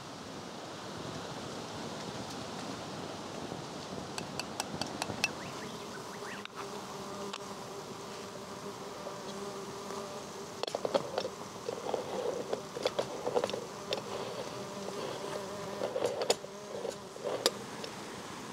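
Insect buzzing steadily from about six seconds in, with light metal clicks and taps as a coffee grinder and moka pot are handled and fitted together, a few at first and then thick clusters in the second half.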